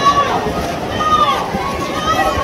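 Poolside spectators yelling and cheering swimmers on during a race, several raised voices calling over one another.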